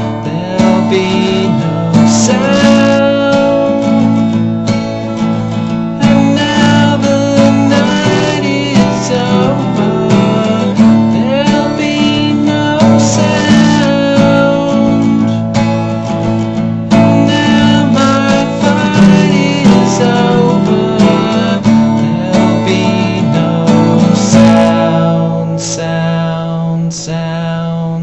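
Steel-string acoustic guitar strummed in chords with a steady rhythm, thinning to a few separate strummed chords near the end.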